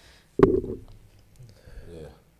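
A short, low sound from a person's voice close to the microphone, beginning sharply with a click a little under half a second in and dying away within about half a second.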